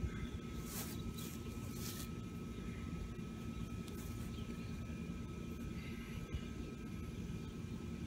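Steady low outdoor background rumble with a faint steady high tone running through it. A couple of brief rustles come about one and two seconds in.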